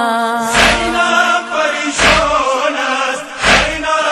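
A male voice chanting a noha, a Shia lament, in long held and wavering notes. A deep thump marks the beat about every one and a half seconds.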